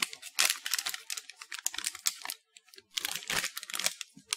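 Plastic candy wrappers crinkling as the packets are handled, in several short bursts with pauses between them.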